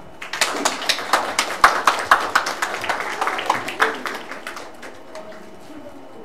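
Audience applauding, starting just after the start and dying away about four to five seconds in.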